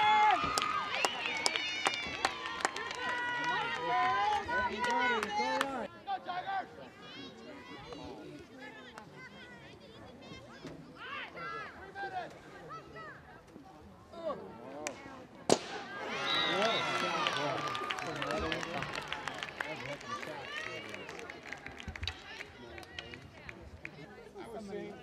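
Voices of spectators and players calling out and shouting during a field hockey game, with scattered sharp clicks of sticks striking the ball. The voices fall away about six seconds in. A single louder crack about fifteen seconds in is followed by a fresh burst of voices.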